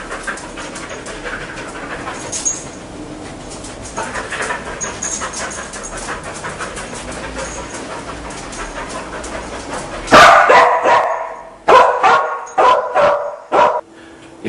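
English springer spaniel cadaver dog barking: a run of loud, sharp barks starting about ten seconds in, after a quieter stretch. This is the dog's trained bark alert, which the handler reads as a positive indication of the scent of a human corpse, a dog that only barks when it finds something.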